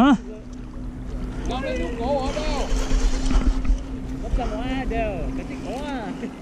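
Steady low hum of a boat motor over a low water-and-wind rumble on the microphone. Several rising-and-falling voice calls come through in the middle and again near the end.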